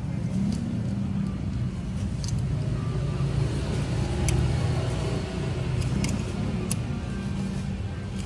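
Low rumble of passing road traffic that swells and eases off, with a few sharp metal clicks from a ratchet wrench turning a motorcycle's oil drain bolt.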